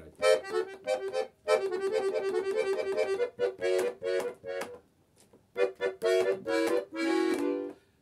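Yasnaya Polyana bayan (Russian button accordion) playing a passage slowly: short detached notes and chords, a quick run of repeated notes in the middle, a brief pause about five seconds in, then more chords ending on a held chord.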